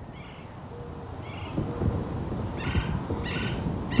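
Birds calling: a low, soft hooting note repeated about four times, with several short higher calls between, over a steady low rumble.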